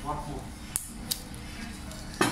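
Two short, sharp clicks of tableware over steady restaurant background murmur, with a brief bit of a child's voice at the start.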